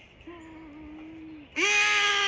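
Small toy accordion: a faint wavering note as it is lifted, then a loud steady held note about one and a half seconds in.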